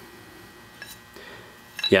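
Two faint clicks of a bronze acme nut being handled on a steel leadscrew, over quiet room tone; a man's voice says a word at the very end.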